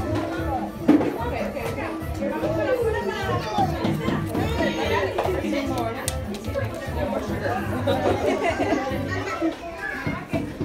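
Children playing and adults chattering in a large room over background music, with one sharp knock about a second in.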